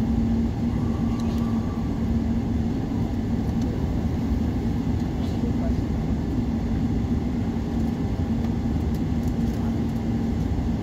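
Airliner cabin noise while taxiing after landing: a steady low rumble with a constant hum running through it.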